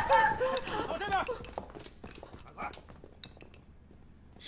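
Porcelain spoon and bowl clinking lightly, a scatter of small chinks and taps as someone eats, after voices in the first second.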